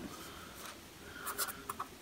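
Faint rustling and scratching of a handheld sheet of paper being shifted, with a few soft, brief sounds in the second half.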